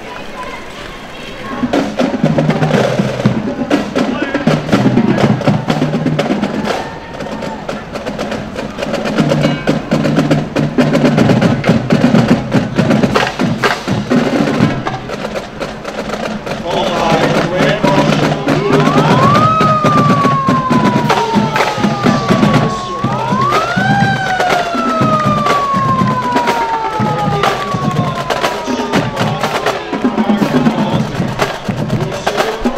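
A high school brass marching band playing a march, starting about a second and a half in. In the second half, a marching drumline plays a cadence with sharp rim clicks, and a siren winds up and slowly down twice.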